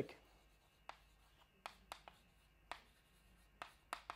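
Chalk writing on a blackboard, heard faintly: about six short, sharp taps and scratches spaced irregularly as the chalk strikes and moves across the board.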